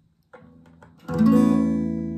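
Acoustic guitar: a few faint string and fret-hand noises, then a chord fretted at the fifth fret is strummed about a second in and left to ring, slowly fading.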